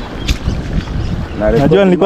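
Wind buffeting the microphone over the rush of brown floodwater in a swollen river. A man's voice comes in near the end.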